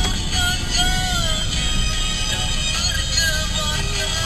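Music: a song with a singer's voice carrying a wavering melody.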